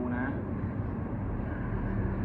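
A short line of dialogue from a TV drama at the very start, over a steady low rumble.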